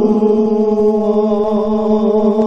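Devotional chanting of a naat: voices holding one long, steady sung note with a slight waver.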